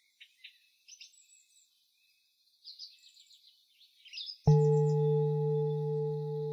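Faint bird chirps, then about four and a half seconds in a singing bowl is struck once and rings on with a low steady tone, slowly fading.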